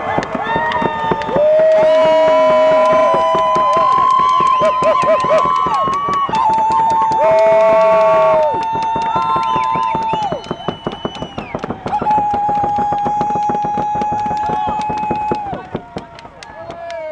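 Many hand drums beaten in a fast, continuous roll, with several voices holding long, high, steady calls over them, each held for a few seconds; the drumming thins out near the end.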